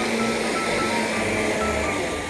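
Upright vacuum cleaner running, a steady whirring motor noise with a low hum that eases near the end, under background music with a simple melody.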